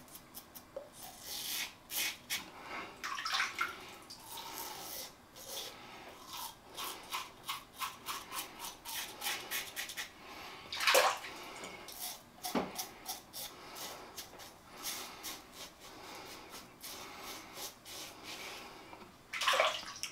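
Tatara Masamune titanium double-edge safety razor scraping stubble through shaving lather in a long run of short strokes, a couple of them louder about halfway through.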